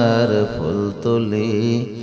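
A man chanting a devotional song in praise of the Prophet into a microphone, with long held notes that waver and glide in pitch and brief breaths between phrases.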